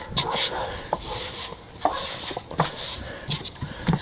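Hands kneading a lump of bait dough in a stainless steel bowl, rolling it through loose flour: soft rustles and scattered light knocks of dough and hands against the metal.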